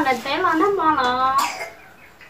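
A woman speaking in a fairly high voice, her pitch rising and falling, going quiet about a second and a half in.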